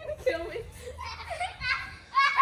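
High-pitched voices talking, with no words made out.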